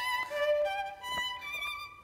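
Violin played with the bow: a short phrase of separate, held notes, fading near the end.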